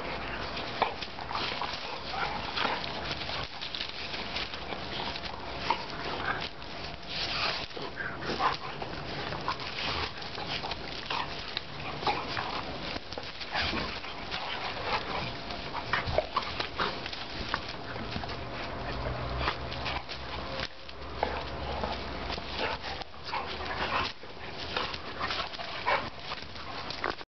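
Two German pointers play-fighting over a ball, giving a busy, irregular string of short dog noises and scuffles.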